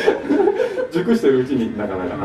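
Men's voices talking, mixed with chuckling laughter; no instruments are playing.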